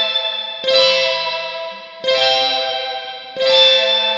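Electric guitar (Fender Stratocaster) played through a 1966 Fender spring reverb tank with the dwell turned all the way up, giving a drippy, sitar-like tone. Three chords are struck about a second and a half apart, each ringing out bright and fading in the springs.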